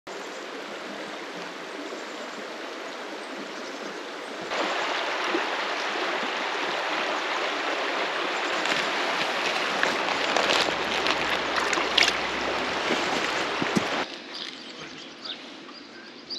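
Shallow river running over stones and gravel: a steady rushing of water that grows louder about four and a half seconds in and falls away near the end.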